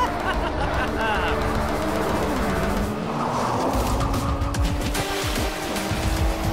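Cartoon soundtrack music with race-car engine sound effects as two cars speed across grass and water, and a rushing noise of spray that swells in the middle. A short laugh comes about a second and a half in.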